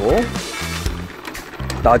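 Two Beyblade Burst tops spinning in a plastic stadium late in a stamina battle, whirring and clicking lightly as they rub and knock together, over background music.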